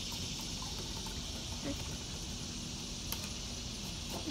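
Plastic spoon stirring a baking soda and water mix inside a plastic flask, with a sharp click about three seconds in, over a steady high hiss in the background.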